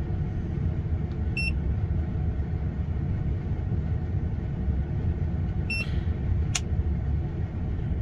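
Handheld Autophix 7150 OBD2 scanner beeping twice as its keys are pressed, with a sharp click just after the second beep, over a steady low rumble.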